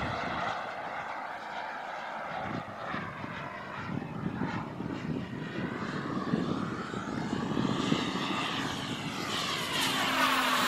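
I-Jet Black Mamba 140 turbine of a large RC model jet in flight, running steadily as the jet passes overhead, growing a little louder toward the end.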